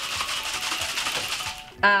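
Shopping bag rustling and crackling for nearly two seconds as a bottle is pulled out of it.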